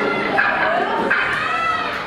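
Live band on stage, with a high pitched sound sliding up and down, twice.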